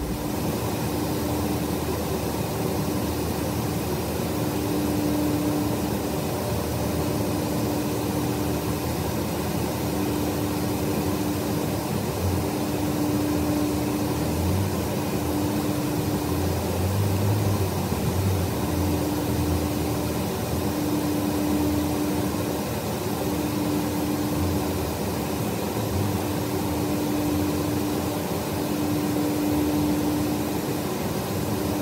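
Steady mechanical hum inside a truck cab, with a steady tone that swells and fades every couple of seconds and a few low thumps in the middle.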